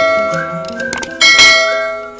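Bright bell-like chime struck about a second in and ringing out as it fades, over upbeat intro music.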